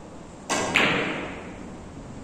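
Two sharp, hard clacks about a quarter second apart, half a second in; the second is louder and rings out briefly.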